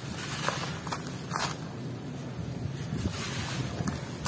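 Dry, coarse grainy material scooped by hand and let fall through the fingers back onto its pile: a continuous gritty trickling rustle, with a few short louder rushes as handfuls drop.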